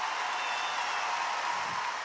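Concert audience applauding, a steady even wash of clapping.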